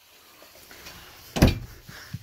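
Wardrobe cabinet door in a travel trailer bedroom being shut, closing with a single sharp thump about two-thirds of the way through after a faint rustle.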